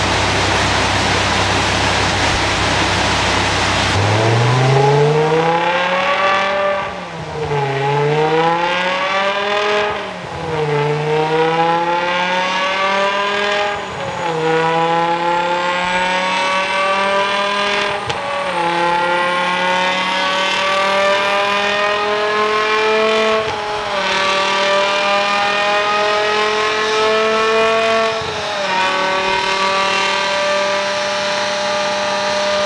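BMW E60 M5's V10 running on a rolling-road dyno, then about four seconds in pulling hard up through the gears, each of six shifts a brief dip in pitch before it climbs again. A thin high whine rises steadily alongside as road speed builds.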